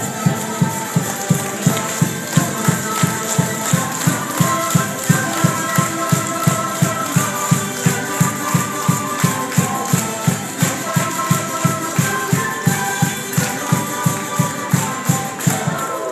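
Live Andean folk music from a street band: a drum beating steadily about three times a second under a held melody line, with a tambourine or shaker rattling along.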